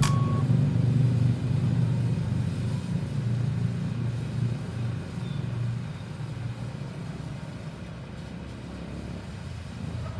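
Pressure washer running with a steady low hum while spraying water on concrete; the hum eases off after about six seconds.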